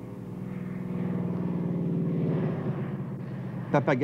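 Propeller engine of a small floatplane droning as it comes in low to land, growing louder over the first two seconds and then easing off.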